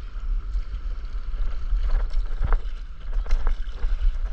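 Wind rumbling on the microphone over the steady rush of sea water, with a faint knock about two and a half seconds in.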